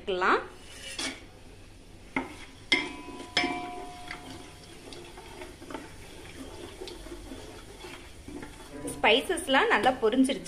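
A steel plate and a wooden spatula knock against a metal cooking pot a few times in the first few seconds as whole spices go into the oil, one knock ringing briefly. Then the wooden spatula stirs the spices in the pot with light scraping and clatter.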